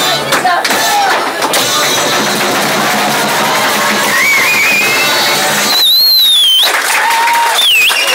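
Audience applauding and cheering at the end of a live band's tune, with shrill whistles over it: a wavering one about four seconds in, a loud falling one about six seconds in, and a short one near the end.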